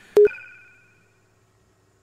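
A single short electronic beep, a low tone with a sharp click, about a fifth of a second in, with faint higher tones fading out behind it. Near silence for the second half.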